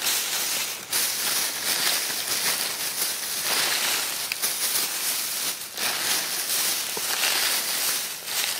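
A thin plastic trash bag and the plastic wrap, bubble wrap and paper packaging inside it rustling and crinkling as a hand digs through the contents, continuous with a few brief lulls.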